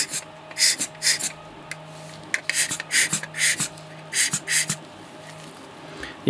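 A hand-squeezed rubber air blower puffing air in about a dozen short hisses, in quick irregular clusters, to blow dust off a camera lens element.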